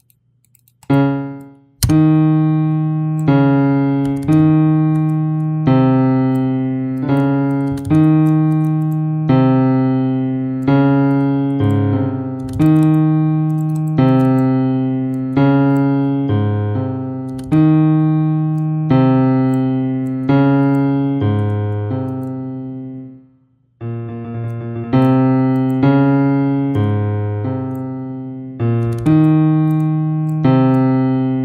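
FL Keys piano plugin in FL Studio playing a slow line of single notes, each struck and left to decay, with the line starting over after a short break about three-quarters through. The notes are the root notes pitch-detected from a piano loop, played back while they are moved to find the right keys.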